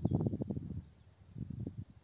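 Low, crackling noise close to the microphone, loudest in the first half second and returning in the second half, with a few faint bird chirps behind it.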